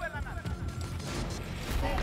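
Background music with a low pulsing beat, with a short voiced exclamation falling in pitch near the start.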